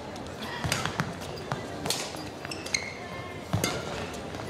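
Badminton rally: several sharp racket-on-shuttlecock hits spaced about a second apart, with brief squeaks of court shoes on the floor, over the steady murmur of an indoor arena crowd.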